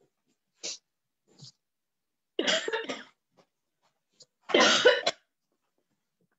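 A person coughing: two faint short sounds, then two loud coughing bouts about two seconds apart.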